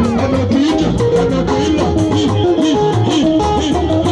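Live band music led by a guitar playing quick bent notes that rise and fall over bass and a steady beat.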